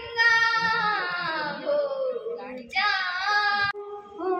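A girl singing solo into a microphone without accompaniment. Long held notes slide slowly downward, with a short break about two and a half seconds in before the next phrase.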